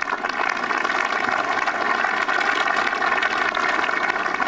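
Steady hum and hiss with several held tones, like a motor or pump running, unbroken throughout.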